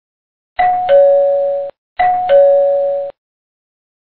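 Ding-dong doorbell chime sound effect played twice, each time a higher note stepping down to a lower one.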